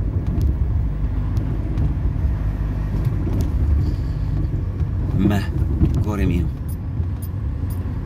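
Steady low rumble of a car's engine and road noise heard inside the cabin while driving, with a brief voice about five seconds in.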